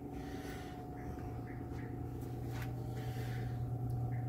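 Steady low electrical hum with a faint higher steady tone, the store's room tone, growing slightly louder toward the end, with a few faint soft knocks.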